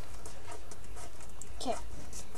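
Square of paper being folded and creased by hand, a few faint light crinkles and ticks, over a steady low hum.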